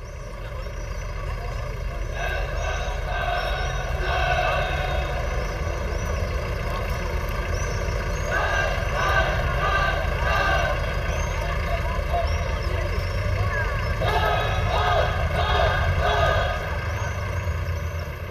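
Street ambience: a steady low rumble of traffic, with unintelligible voices rising over it three times.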